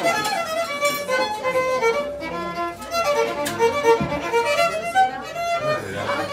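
Solo violin played live, a quick run of short bowed notes.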